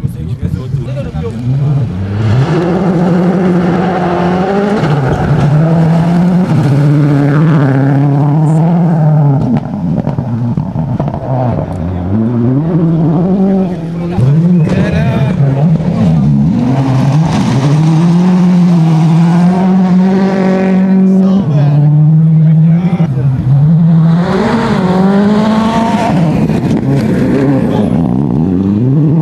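World Rally Car engines, turbocharged 2.0-litre four-cylinders, revving hard as the cars pass on a gravel stage, the pitch climbing and dropping with each gear change.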